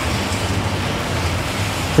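Steady outdoor street background noise, an even hiss with a low hum underneath, holding level through the pause.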